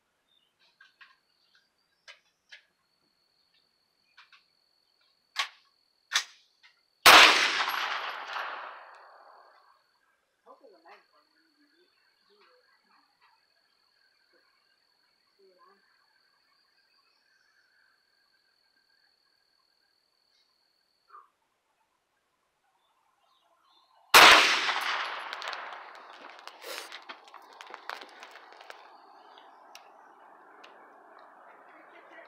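Two single shots from a Hi-Point 995 9mm carbine, about seven seconds in and again about seventeen seconds later. Each is a sharp crack followed by an echo that dies away over a couple of seconds.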